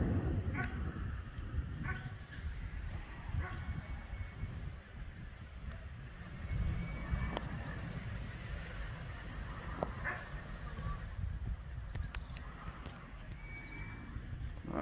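Uneven low rumble of wind buffeting the microphone outdoors, with a few faint, brief high chirps and small clicks scattered through it.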